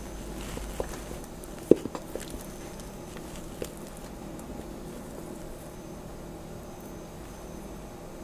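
A few soft clicks and taps of a spatula against a glass bowl as thick, sticky bread dough is scraped out into a loaf pan, the sharpest about two seconds in, over a faint steady low hum.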